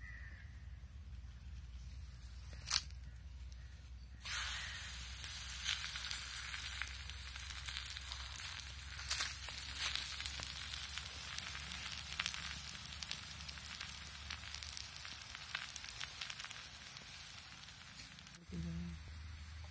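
Spinach adai batter sizzling on a hot oiled pan over a wood fire: the sizzle starts suddenly about four seconds in as the batter goes onto the pan and runs on as a steady hiss full of small crackles. A single sharp click comes shortly before it starts.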